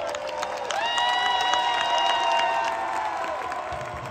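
Arena horn sounding steadily for about two and a half seconds, marking the end of the basketball game, over a crowd applauding and cheering.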